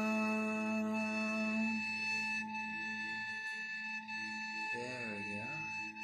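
Sustained meditative drone of many steady ringing tones, like a singing bowl, thinning out about two seconds in. A brief wavering voice sounds just before the end.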